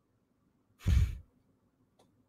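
A woman's single short sigh, breathing out into a close microphone about a second in, lasting about a third of a second.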